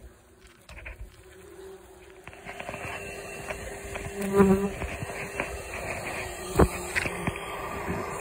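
Bumblebees buzzing steadily around their dug-open underground nest, the colony disturbed by the excavation. The buzzing grows louder after about two seconds and swells briefly about halfway. A couple of sharp knocks come near the end.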